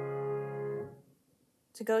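A D-flat (C-sharp) major chord on a piano, played with both hands as the one chord of the key, held as steady sustained tones and then released about a second in.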